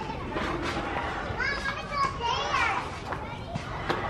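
Children playing, with high voices calling out in the background, loudest about halfway through.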